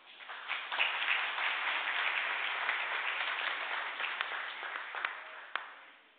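A congregation applauding: many hands clapping at once, swelling quickly at the start and dying away about five seconds in.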